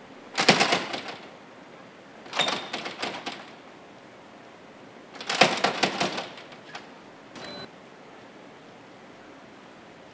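Metal-framed glass double doors rattling in their frame and latch hardware as they are tugged without opening: three bursts of clattering clicks, each about a second long.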